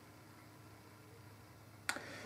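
Quiet room tone with a faint steady hum, broken near the end by one sharp click.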